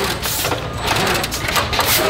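An automatic cutting-sticking machine running: rapid, irregular mechanical clicking and clattering of its pneumatic planting heads over a steady low hum.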